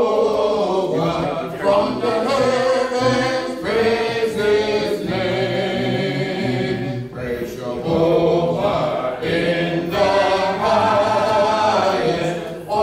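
Church congregation singing a hymn a cappella, voices only, in long held notes with short breaks between phrases.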